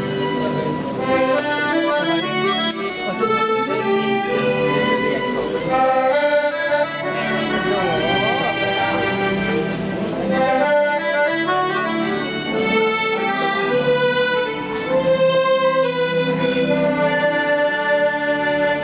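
Background music: an accordion playing a melody over held chords.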